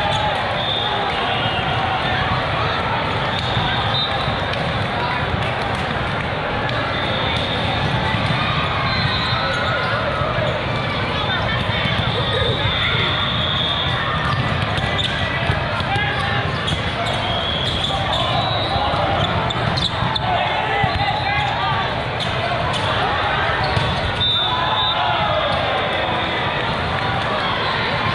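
Echoing din of a large sports hall during volleyball play: many voices talking and calling out over one another, with sharp ball hits and short high squeaks from the courts.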